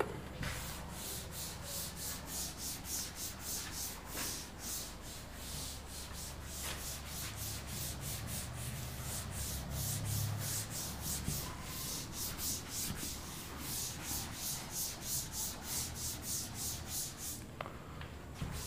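Yellow chalkboard duster being rubbed back and forth over a chalkboard to wipe off chalk writing: a soft, even run of rubbing strokes, about three a second.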